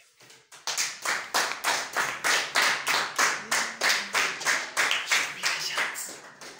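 Hands clapping in a steady, even rhythm of about three to four claps a second, starting about half a second in.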